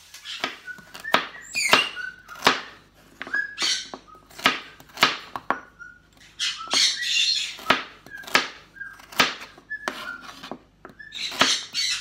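Chef's knife chopping carrots on a plastic cutting board: a run of sharp knocks of the blade on the board, about two a second, with short pauses.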